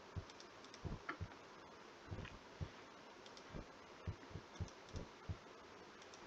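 Faint, irregular clicks of a computer mouse, about a dozen soft taps spread unevenly over a few seconds.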